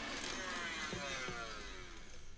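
Stand mixer whirring with its whisk attachment, the motor's whine falling steadily in pitch as it slows down.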